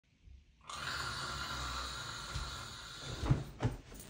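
A bed duvet being flapped up into the air, two quick heavy whooshes of air near the end, over a steady background hiss and low hum.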